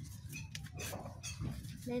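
Irregular rustling and crackling of garden plant leaves being brushed and handled, over a low steady rumble.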